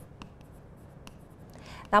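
Pen writing on the glass of an interactive touchscreen display: a few faint taps and light strokes.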